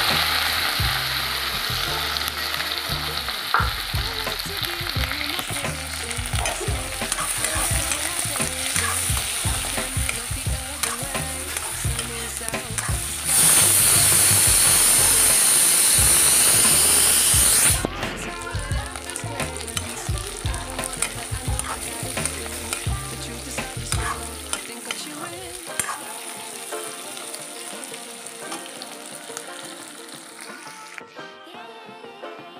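Chicken pieces with onion and green chilli sizzling in hot oil in a metal kadai, stirred with a spatula that scrapes and clicks against the pan. The hiss grows much louder for about four seconds near the middle, then eases off.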